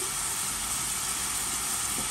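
Diced chicken and onion sizzling steadily in oil in a stainless steel frying pan on a gas burner.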